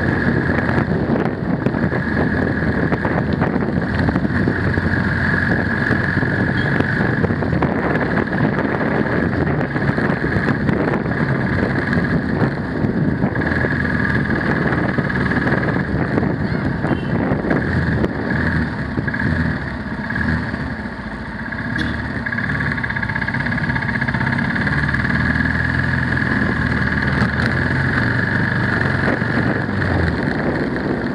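Motorcycle riding along a road, its engine running steadily under wind and road noise, with a steady high whine throughout. The engine eases off briefly about two-thirds of the way through, then picks up again.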